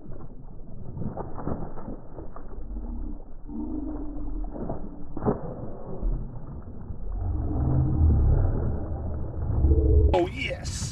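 A hooked spotted bass thrashing and splashing at the surface during the fight, heard muffled over a low rumble. There is a sharp splash about five seconds in, and the rumble and splashing are loudest near the end.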